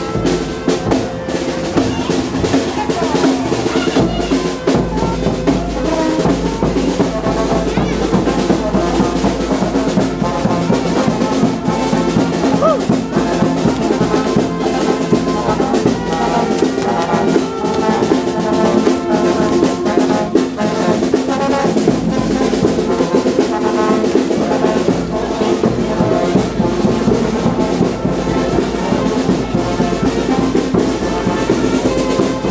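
Brass band music, trumpets and trombones over drums, playing continuously.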